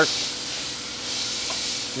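Steady background hiss with a faint, steady high hum under it.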